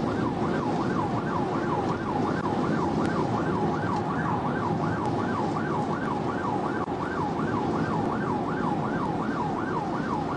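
Police car's electronic siren in a fast yelp, its pitch sweeping up and down about three times a second, over steady road and engine noise of the cruiser at highway speed.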